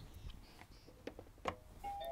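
Doorbell chime: a light click about one and a half seconds in, then the first clear note of the chime sounds near the end.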